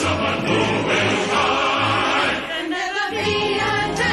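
A musical-theatre ensemble number: a choir singing with full orchestral accompaniment. The bass drops out briefly about three seconds in, then returns.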